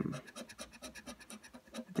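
A lottery scratch card being scratched with a thin tool: quick, even scraping strokes rubbing off the card's coating, more than ten a second.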